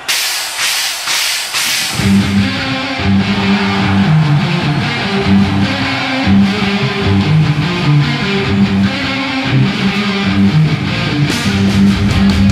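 Evenly spaced cymbal strokes count in, and about two seconds in a live heavy-metal band kicks in: distorted electric guitars and bass playing a riff over drums.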